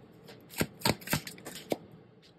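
A tarot deck handled in the hands, a card drawn from it and laid face down on the table, with a quick run of about five sharp snaps of card stock.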